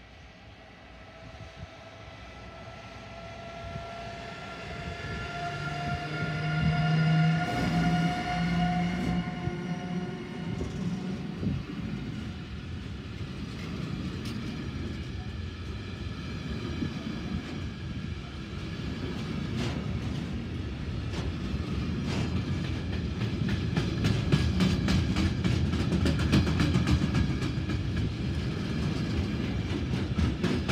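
Two Siemens Vectron electric locomotives approach and pass, growing louder to a peak about seven seconds in, with a whine that rises slightly in pitch. A long train of covered boxcars then rolls by with a steady rumble and wheel clicks on the rails, the clicks coming thicker near the end.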